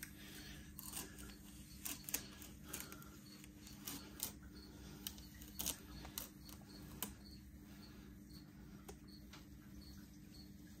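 Faint, scattered light clicks and taps from small objects being handled, about a dozen of them spread unevenly, over a steady low hum.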